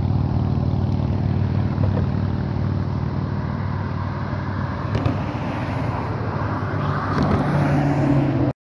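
A steady, low mechanical hum from a running motor, pitched and even, swelling slightly near the end.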